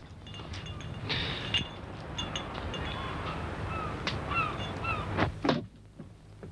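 Gulls calling, a handful of short falling cries, over a steady low rumble and hiss of harbourside background noise.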